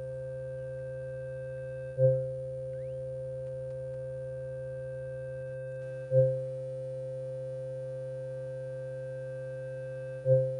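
Electronic synthesizer drone: a steady chord of sustained low and mid tones. A sharp accented swell twice lifts the chord and dies away within about half a second, about four seconds apart.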